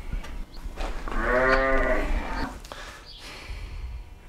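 A sheep bleating once in a barn pen: a single long, fairly low-pitched call of about a second and a half, starting about a second in.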